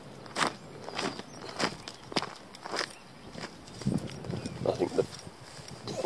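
Footsteps crunching on a gravel and dirt path at a steady walking pace, about one step every 0.6 seconds, fading somewhat in the second half. A short, faint pitched vocal sound comes a little before the end.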